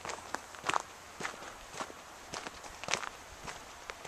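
Footsteps on a gravel path at a steady walking pace, about two steps a second.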